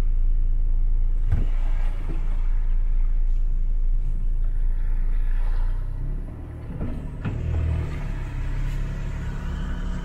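Low engine rumble heard inside a diesel ute's cab as it drives up a steel ramp, with a sharp knock about a second and a half in. About six seconds in the rumble drops and changes, with a couple of clunks just after.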